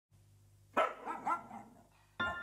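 A dog barking, about three quick barks starting near the first second.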